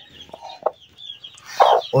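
Hen clucking while she is held and handled, a few soft clucks and then one louder cluck about a second and a half in.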